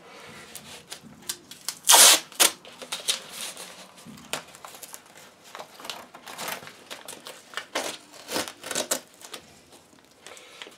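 Paper masking tape being pulled off the roll and torn, with crinkling as the strips are pressed down over cardboard. The loudest rip comes about two seconds in, followed by a shorter one, then scattered smaller rips and crinkles.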